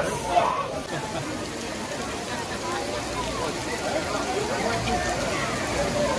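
Heavy downpour of rain, a steady hiss, with scattered voices of people nearby.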